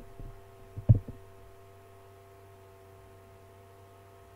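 A single low thump about a second in, preceded by a few faint clicks, then a steady electrical hum with several faint steady tones.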